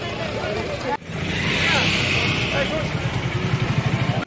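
Busy street noise: a motor vehicle's engine running close by, its low rumble pulsing and growing louder near the end, with a hiss about a second in, over chatter of voices.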